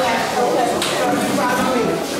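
Indistinct voices of adults and children talking in a room, with one short, sharp noise a little under a second in.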